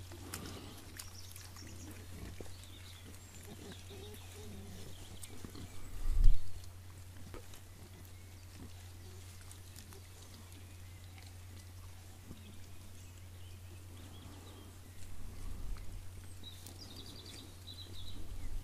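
Faint sounds of wild boars grunting and rooting at the ground around a rubbing tree, over a steady low hum. About six seconds in there is one loud, low thump.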